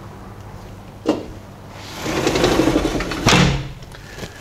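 A sliding glass door being opened and shut. There is a knock about a second in, then the door rolls along its track for about a second and a half and closes with a bang.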